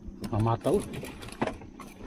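A person speaking in short phrases, with a few sharp clicks, over a steady low hum.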